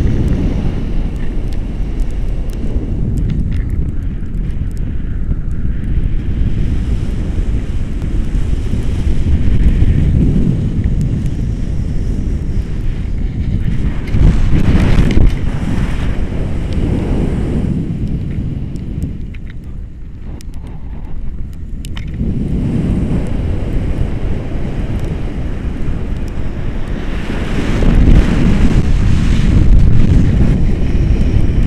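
Wind from a paraglider's flight buffeting the microphone of a pole-mounted camera: a loud, low rumble that swells and eases in gusts, dropping off briefly about two-thirds of the way through.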